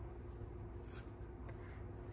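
Faint rustling of a cloth ribbon being handled and tied into a bow by hand, with a couple of small ticks, over a low steady hum.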